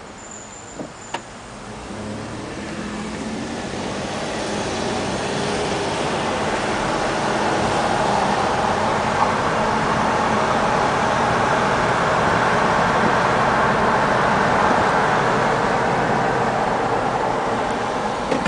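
Road and wind noise of a moving car, with no distinct engine note. It builds steadily over the first several seconds as the car gathers speed, then holds level. Two small clicks sound about a second in.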